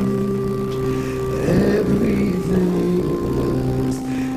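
Live gospel music: long held chords with a male soloist singing over them.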